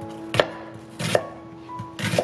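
Chef's knife slicing a red onion on a wooden cutting board: three crisp cuts, each going through the onion onto the board, about three-quarters of a second apart.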